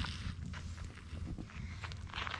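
Crunch of a bite into a toasted pudgy pie sandwich at the start, then quieter chewing and faint clicks, over a steady low rumble from the hand-held camera.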